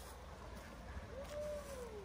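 Two-door Jeep Wrangler's engine running faintly at low revs while it wades the river, with one faint tone that rises and falls about a second in.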